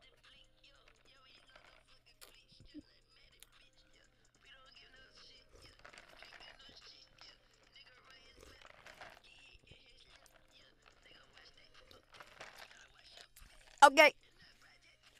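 Faint, tinny background audio of a studio session: quiet music and voices bleeding through. A short, loud vocal sound comes just before the end.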